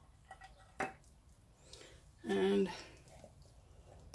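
Plastic paint cup and scraper being handled on a table: a few light clicks, then a sharper knock about a second in. A woman's short hum, just past the middle, is the loudest sound.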